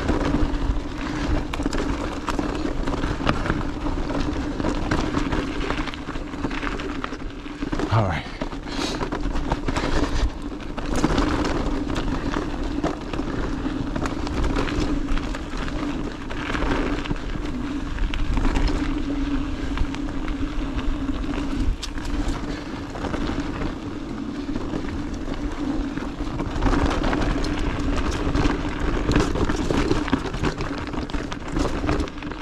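Mountain bike riding over a dirt and rocky trail: tyre noise and the bike rattling and knocking over rough ground, with a steady low hum throughout.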